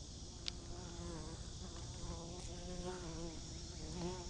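A bee buzzing close to the microphone, its hum wavering up and down in pitch and swelling and fading as it circles, starting about a second in. A faint click comes just before the buzz.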